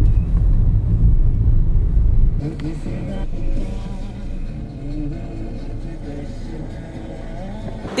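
Car driving through a road tunnel: a loud, deep rumble of engine and tyres. It cuts off suddenly about two and a half seconds in, giving way to a quieter background with faint wavering tones.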